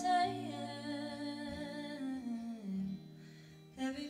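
Women's voices humming a slow, wordless melody over acoustic guitar, long held notes stepping down in pitch, with a brief dip just before the next phrase starts near the end.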